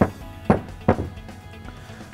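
Three sharp knocks of a metal vacuum pump housing being set down on a workbench, about half a second apart, over background music.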